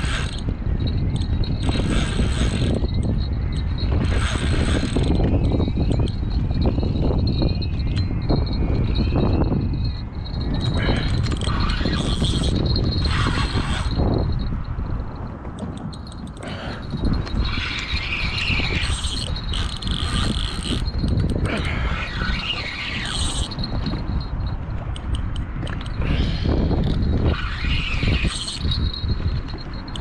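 Spinning reel's drag buzzing and gears clicking in repeated bursts while a large fish is fought on a heavily bent rod, the longest spell of it in the second half. Wind rumbles on the microphone throughout and is the loudest sound.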